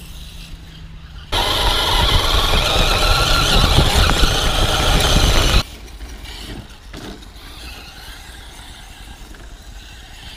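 Brushless electric motor of a radio-controlled truck whining loudly, with tyre noise on dirt, from about a second in until it cuts off suddenly a little past the middle; a quieter outdoor background around it.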